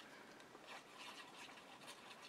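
Near silence, with faint rubbing and handling sounds from hands working a glue bottle over card.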